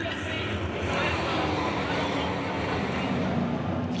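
A pack of NASCAR Whelen Euro Series V8 stock cars racing past on an oval, their engines making a steady drone.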